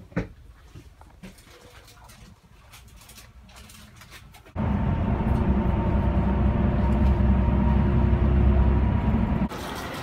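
Cabin noise inside a moving express coach: a loud, steady low rumble of engine and road, with a faint steady hum in it, that cuts in suddenly about halfway through. Before it there is a quieter stretch with a few light clicks.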